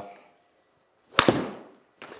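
Golf iron striking a ball off a hitting mat: a sharp smack about a second in, with a second hit right after as the ball meets the simulator's impact screen, then a brief ring in the small room.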